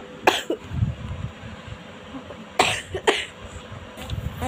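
A person coughing: one cough just after the start, then two coughs close together near the end.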